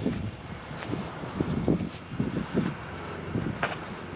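Wind buffeting a body-worn camera microphone, with footsteps on asphalt about once a second.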